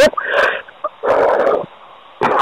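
A person breathing heavily over a telephone line: a short breathy sound near the start, then a longer, louder exhalation about a second in.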